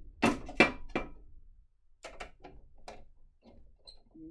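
Metal door of a wall-mounted fire alarm control panel enclosure being dropped back onto its hinges and fitted: two sharp metal clunks within the first second, then a few lighter clicks and knocks.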